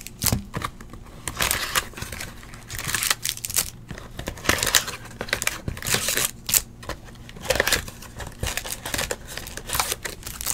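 Foil-wrapped trading card packs crinkling and small cardboard pack boxes rustling as the packs are slid out and handled, in irregular bursts.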